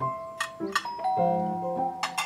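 A doorbell chime rings over light background music.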